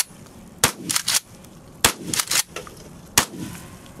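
An H&R/NEF Pardner Pump Protector 12-gauge pump-action shotgun firing 00 buckshot: three shots about a second and a quarter apart. Between them comes the clack-clack of the pump being racked to chamber the next shell.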